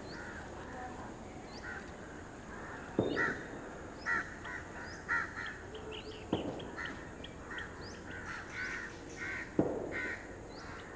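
Crows cawing repeatedly, with quick high chirps from smaller birds, and three sharp knocks about three seconds apart, the first and last the loudest.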